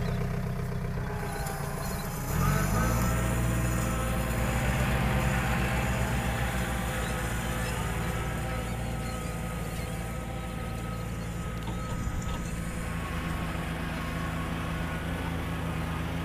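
Compact John Deere tractor's diesel engine running steadily as it drags a rake through beach sand, growing louder about two seconds in.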